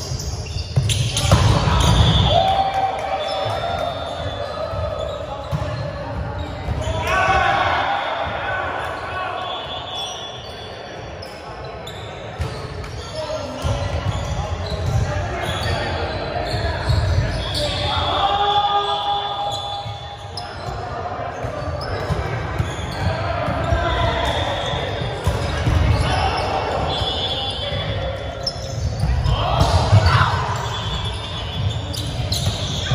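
Indoor volleyball being played in a gym: the ball being hit and players' feet thudding on the hardwood court, with players shouting calls now and then, all echoing in the large hall.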